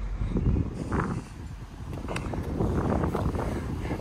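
Wind buffeting the microphone outdoors, an uneven low rumble, with a faint click a little after two seconds in.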